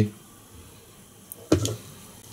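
Quiet room tone broken by one sharp click about a second and a half in, with a short vocal sound right after it.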